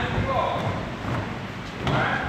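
A voice calling out in a large, echoing hall, over the scuffs and thuds of many dancers' feet stepping on a wooden floor.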